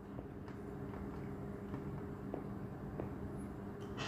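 A man chewing a bite of toasted chocolate Pop-Tart, heard faintly as a few soft clicks of the mouth over a steady low hum.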